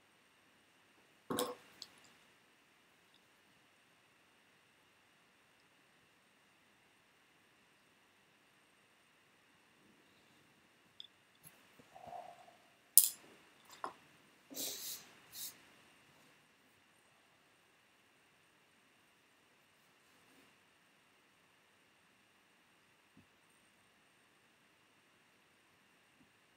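Mostly quiet laptop-fan hum. A sharp knock comes about a second in, and a cluster of clicks and knocks falls around the middle, as a carved woodblock and carving tools are handled on the bench.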